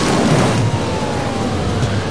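Hurricane wind and rain making a loud, steady rushing noise, with a faint thin tone slowly falling in pitch through it.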